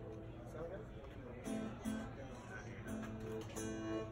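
Acoustic guitar strummed lightly, a few separate chords, with voices in the background.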